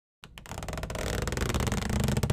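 Animated-intro sound effect: a low rumble with fast, even ticking that starts just after the opening and grows steadily louder, building toward intro music.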